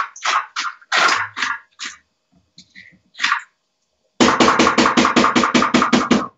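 Computer keyboard being typed on: scattered keystrokes, then from about four seconds in a fast, even run of about six keystrokes a second.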